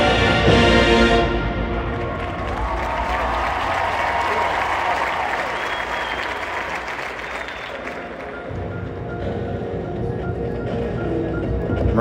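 Marching band playing in a large stadium: the full band holds a loud chord that cuts off about a second in, then softer ensemble music with marimba follows while the crowd applauds, building again near the end.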